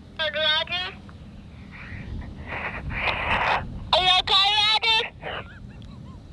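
A young child's high voice through a handheld walkie-talkie's small speaker, thin and tinny: a short 'Roger' at the start, then a burst of radio hiss around the middle, then the child's wavering voice again for about a second near the end, cut off abruptly.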